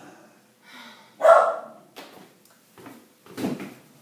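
A dog barking indoors: a few short, separate barks, the loudest about a second in.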